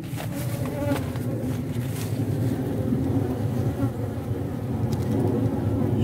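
Honeybees buzzing steadily as they forage in an open pitaya (dragon fruit) flower, a continuous low hum.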